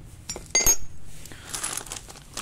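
Stainless steel sprayer pump pistons clinking against each other and other metal parts as they are set down, the loudest clink about half a second in and ringing briefly. A rustle of a plastic bag of small metal fittings follows near the end.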